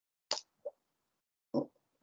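A single short click or plop about a third of a second in, followed by a fainter small blip, against otherwise dead silence; a man's voice starts to speak near the end.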